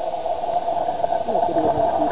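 Faint, indistinct voices over a steady hum, with a thin, radio-like sound.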